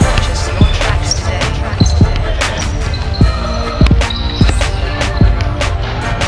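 Basketballs bouncing on a gym floor in irregular thuds, heard over background music.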